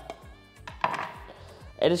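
Kitchen knife tapping and scraping against a metal garlic press over a bowl, then set down on a wooden cutting board: a few light clicks and knocks.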